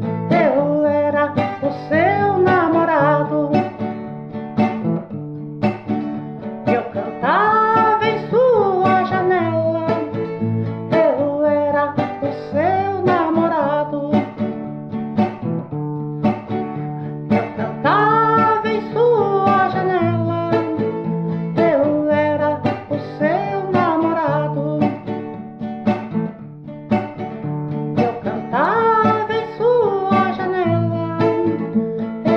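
Guitar music with plucked strings: an instrumental passage of a song, a melodic phrase with gliding notes recurring every five or six seconds over a steady low accompaniment.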